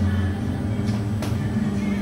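Steady low hum of a spinning airplane swing ride's machinery, with music in the background and a couple of faint clicks about a second in.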